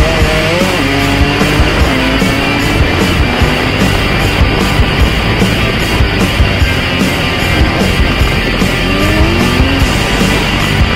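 Rock music with a driving beat over a dirt bike engine whose revs rise and fall, most clearly near the start and again toward the end.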